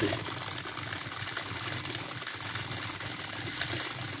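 Two small 300 RPM DC gear motors of a robot car running steadily, a low whir, driven backward on the gesture command.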